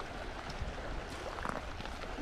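Footsteps crunching on shingle, about two steps a second, over the steady wash of small waves at the shoreline. Wind rumbles on the microphone.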